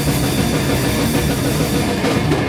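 A band playing loud, dense heavy rock live, with an electric bass being played hard.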